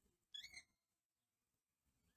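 Near silence, broken by one brief, faint, high-pitched chirp about a third of a second in.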